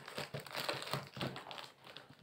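Packing tape and wrapping on a cardboard delivery box crinkling and rustling as it is opened by hand, in irregular crackly strokes.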